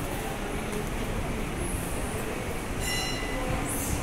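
Steady din of a packed temple hall: many indistinct voices blurred into a continuous rumble. About three seconds in, a brief high metallic ring sounds over it.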